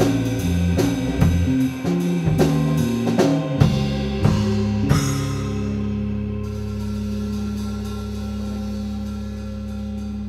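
Live rock band of drum kit, electric bass and keyboard playing the closing bars of a song: steady drum and cymbal hits for about five seconds, then one held final chord that rings on while the cymbals die away.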